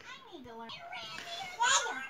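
A young child's voice in the background: a short falling call near the start and a louder call near the end.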